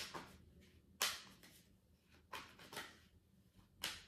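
A deck of tarot cards being shuffled by hand: about five soft rasping swishes of cards sliding against each other, roughly a second apart, the loudest about a second in.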